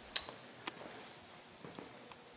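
Faint footsteps on a shop floor: a few light, scattered taps over quiet room tone.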